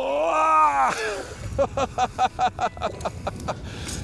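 A man's long, drawn-out whoop that rises and falls, followed by a quick run of laughter.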